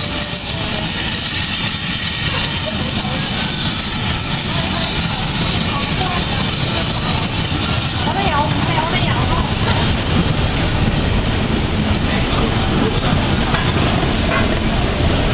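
Vintage wooden railway carriages rolling slowly past a platform behind a steam locomotive, with a low rumble and a loud, steady hiss.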